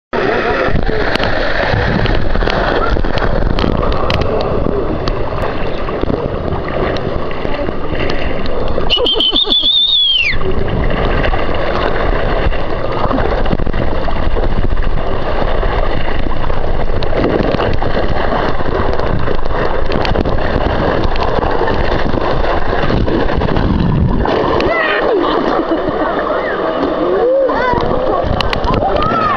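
Water rushing down an enclosed water slide as a rider slides through it, a loud, steady wash of water noise that drops out briefly about nine seconds in.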